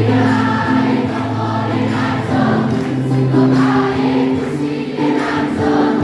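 A large group of students singing together as a choir, accompanied by guitars, in long held notes.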